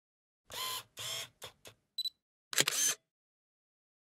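Camera operating sounds from a photography-channel intro: two short mechanical bursts, two small clicks, a brief high-pitched beep about two seconds in, then a final shutter-like burst.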